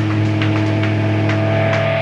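Live band's amplified electric guitar holding a loud, sustained low droning note, with steady higher tones ringing above it and a few faint hits from the kit.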